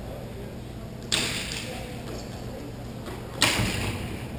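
Two sharp cracks from the roller-hockey play, one about a second in and a louder one near the end, each ringing out briefly in the large rink hall.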